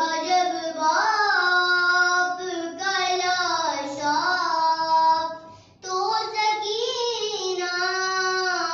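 A young girl singing an Urdu noha (Muharram lament) unaccompanied, in long held phrases that glide up and down in pitch, with a short pause for breath about two-thirds of the way through.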